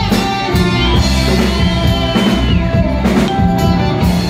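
Live rock band playing: electric guitar over a drum kit, with a long held high note from about a second in.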